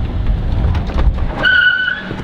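A golf cart driving, with a low rumble and wind buffeting the microphone, then a steady high-pitched squeal in the last half second as it comes to a stop.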